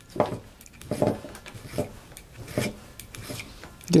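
Small safe-edged auger file drawn across the steel blade of an adjustable auger bit's cutter in about five short, even strokes, sharpening its cutting edge.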